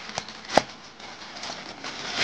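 Plastic mailing bag rustling as it is cut open with scissors, with two short sharp clicks near the start, the second louder.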